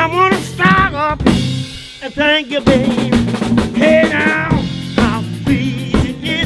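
Live band music: a singer's wavering vocal lines over a drum kit with snare and rimshot hits, backed by keyboard.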